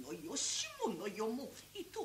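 A female gidayū chanter's voice in the stylised, half-sung speech of jōruri, its pitch sliding up and down in long drawn-out syllables, with a sharp 's' sound about half a second in.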